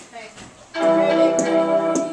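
Digital piano being played: after a short lull, notes and chords come in loudly about three-quarters of a second in and ring on, changing pitch as the tune continues.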